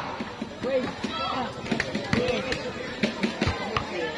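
Voices of the crowd and players chattering, with a basketball bounced several times on the concrete court in the second half.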